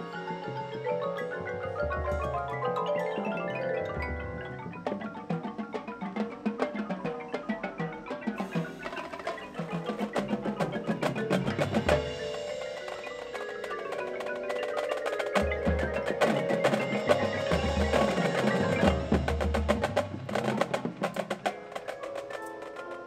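Marching band show music led by the front ensemble: marimbas and other mallet percussion playing quick runs of notes, with drum strikes and deep booms at intervals, growing fuller and louder after the middle.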